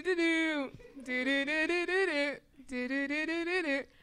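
A woman singing a song's melody using only the syllable "do", so that the tune can be guessed: three short phrases of held, gliding notes with brief pauses between them.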